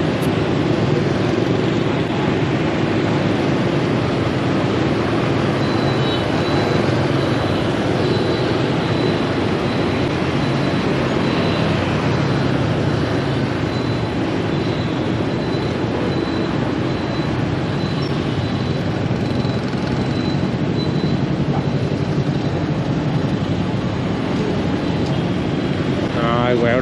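Steady on-road noise from riding a motorbike in dense scooter traffic: the bike's own engine hum and road noise mixed with the many motorbikes around it.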